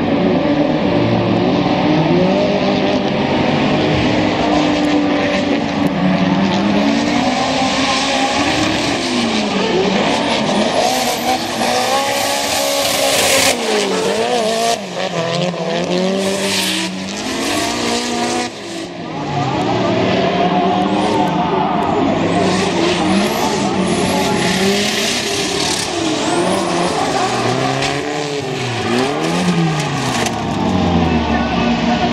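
Two drift cars in a tandem run: their engines hold steady revs for the first few seconds, then rev up and down over and over as the throttle is worked through the slides. Tyres squeal and skid throughout.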